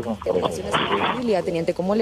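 Only speech: a conversational exchange of greetings in Spanish.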